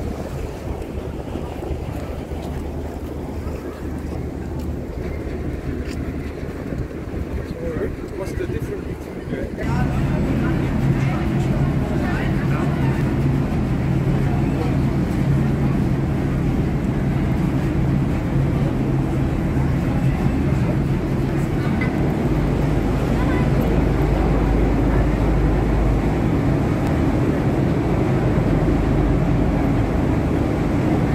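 Moored harbour tour boat's engine running with a steady low hum, with people's voices around it. About ten seconds in the sound jumps louder, with a stronger, deeper engine drone.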